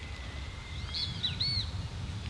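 Outdoor ambience: a few short bird chirps about a second in, over a steady low rumble.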